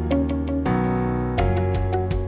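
Outro background music on a piano-like keyboard: sustained chords under a quick run of repeated notes, the chord changing about two-thirds of a second in and again near the end.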